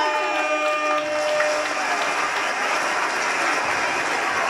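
Crowd noise from a seated audience: a steady, dense clatter like scattered applause, with a held pitched note fading out about a second and a half in.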